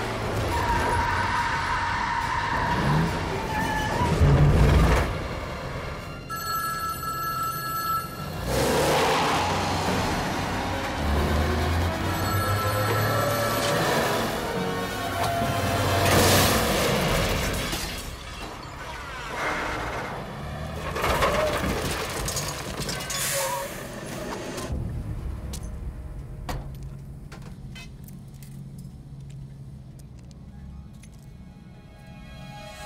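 Film soundtrack: tense orchestral music over a payphone ringing in repeated rings and a truck engine, with a truck smashing into the phone booth about midway, glass shattering and metal breaking.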